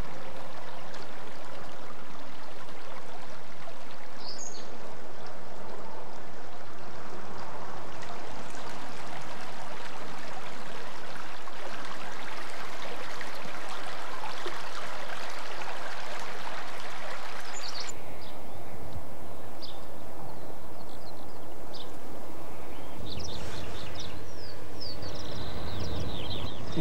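Shallow river rushing steadily over stones. About two-thirds of the way through the water sound cuts off suddenly, leaving a quieter open-air background with scattered short bird chirps.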